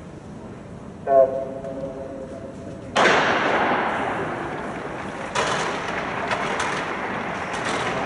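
Electronic start signal for a 100 m hurdles race about a second in: a sharp onset, then a held horn-like tone of nearly two seconds. From about three seconds, a loud, steady rush of noise with scattered sharp knocks while the race runs.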